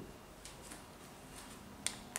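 Marker pen writing on a whiteboard: a few faint, short strokes, then a sharp click near the end.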